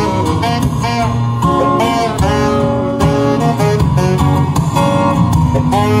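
Live instrumental duo of saxophone and acoustic guitar: the guitar plucks a steady accompaniment while a smooth, gliding melody line runs above it.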